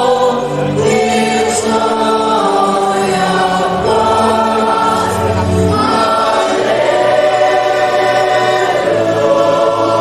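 Mixed choir of men's and women's voices singing a gospel song in harmony into microphones, holding long chords that change every few seconds.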